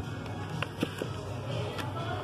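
Background music in a shop, with a few light clicks of shrink-wrapped vinyl record sleeves knocking together as they are flipped through in a wooden bin.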